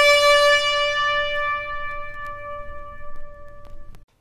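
Trumpet holding one long sustained note that slowly fades, then cuts off abruptly near the end.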